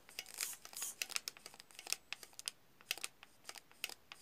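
Irregular plastic clicks and rustles from a hand-held pistol-grip RC transmitter as its controls are worked close by, with no steady motor sound.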